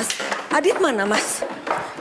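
Footsteps of two people walking down a staircase, a run of short knocks. A brief voice sound rises and falls about half a second in.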